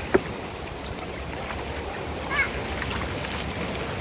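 Steady wash of shallow surf on a sandy beach, with a sharp knock just after the start and a brief high call about two and a half seconds in.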